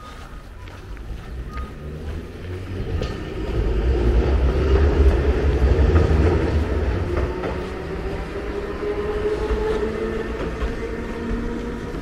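Low rumble of a passing heavy vehicle, swelling to its loudest about four to seven seconds in and then slowly fading, with a faint steady engine note.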